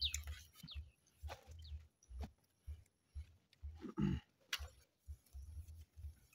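A hand hoe striking and scraping loose soil in a series of short strokes, pulling earth back into a planting hole. A brief low grunt-like sound comes about four seconds in, with faint bird chirps behind.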